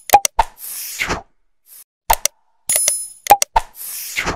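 Sound effects of an animated like-and-subscribe end card: a run of quick clicks and pops, a whoosh about a second in, and a short high chime near three seconds. More pops follow and another whoosh comes near the end, as the sequence loops.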